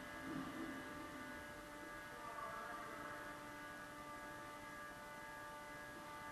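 Faint, steady hum of an indoor ice rink, made of several fixed tones, with two brief faint distant sounds about a quarter second in and a couple of seconds in.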